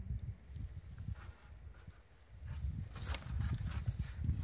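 Wind buffeting the microphone in uneven gusts, with light knocks and rustles of wooden planks being handled; a cluster of knocks comes about three seconds in.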